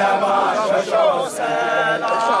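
A group of men of a Zulu regiment (amabutho) chanting together in unison, many voices holding long notes.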